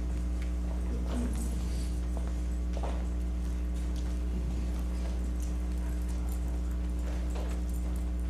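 Steady low electrical hum on the recording, with scattered footsteps, shuffles and small knocks as people walk up an aisle.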